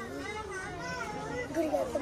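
Indistinct voices talking quietly in the background, with no clear words.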